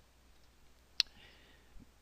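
A single computer mouse-button click about halfway through, over faint room tone.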